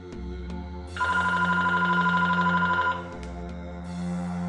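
A telephone ringing once for about two seconds, a rapid warble of two tones, over a steady low background drone.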